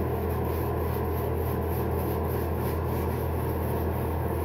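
26 mm synthetic shaving brush (Crown King Tali Long Rider) being worked over lathered skin and beard, a soft steady rubbing of bristles through shave soap lather, over a steady low hum.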